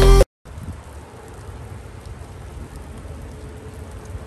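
Background music cuts off abruptly at the start, then a steady soft hiss of sleet falling outdoors, rain half turned to snow, with a low rumble under it.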